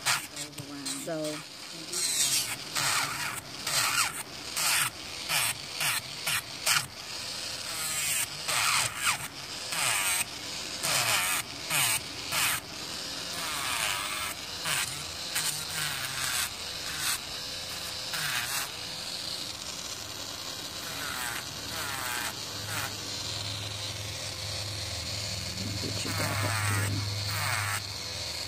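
Electric nail drill (e-file) buzzing as its bit grinds gel top coat off an acrylic nail, with many short scraping strokes as the bit is pressed on and lifted. A low hum builds near the end.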